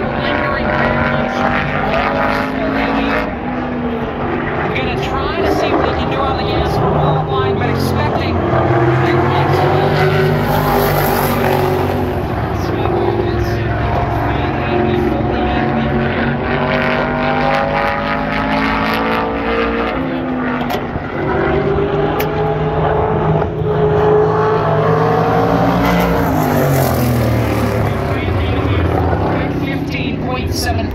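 Winged sprint car's V8 engine at full throttle on a qualifying run around an oval, its pitch rising and falling through each lap. It passes loudest about ten seconds in and again near the end, roughly sixteen seconds apart.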